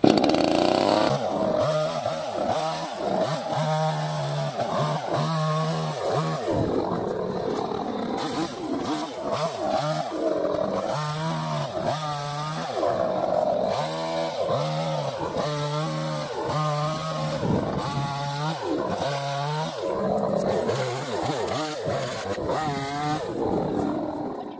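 Perla Barb 62cc V4 two-stroke chainsaw revving up and falling back to idle again and again while cutting small branches. The new saw is being run in with light cuts and varied revs.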